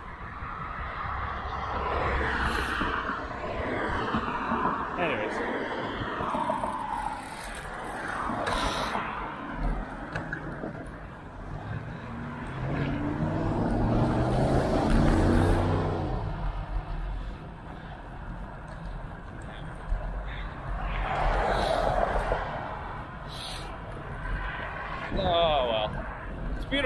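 Wind and road rumble on a handlebar-mounted action camera while cycling, with motor traffic swelling past; a vehicle engine note rises in pitch about halfway through.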